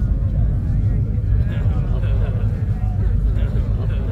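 A steady low rumble under indistinct, overlapping murmuring voices.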